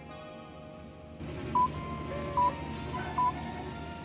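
Quiet background music of held tones that fills out about a second in. Over it come three short, high electronic console beeps, about a second apart.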